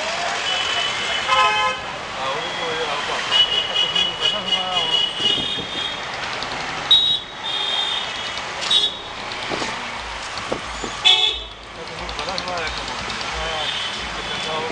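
Busy street traffic with vehicle horns honking repeatedly, one long blast in the middle, over the hum of passing motorbikes and voices of passers-by. A few sharp clicks come near the end.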